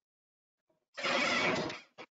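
Venturi valve's actuator linkage and cone spring assembly being moved by hand: a short mechanical sliding rasp lasting about a second, starting a second in, followed by a small click.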